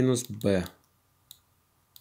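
A man's voice says a short word, then over near silence a single short click of a stylus tapping a drawing tablet, a little over a second in.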